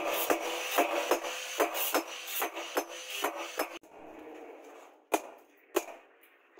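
Hand-hammer blows on a red-hot steel knife blade lying on a steel anvil post, a sharp metallic strike about two to three times a second for nearly four seconds, then two more strikes after a short pause.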